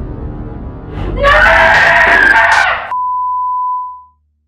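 Dark trailer music, then, about a second in, a person's loud scream lasting nearly two seconds that cuts off suddenly. A single steady high beep tone follows and fades away near the end.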